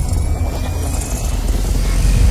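Cinematic intro sound design for a logo sting: a deep, steady rumble with a hiss over it.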